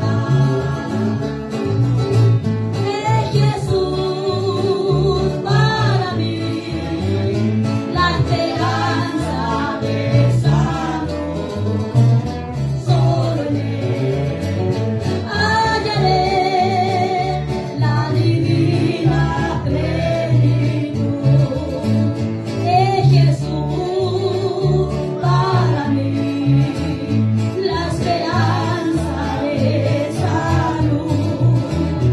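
A woman singing a worship song with a wavering vibrato on held notes, accompanying herself on a strummed acoustic guitar, with no pauses.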